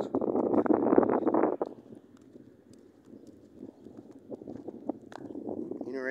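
Loud rustling and crackling close to a phone's microphone for the first second and a half, then quieter, irregular footsteps on pavement.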